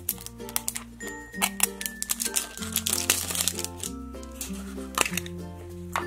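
Background music with held bass notes changing every second or so. Over it, many short clicks and crinkles as a plastic Mashems toy capsule is handled and opened.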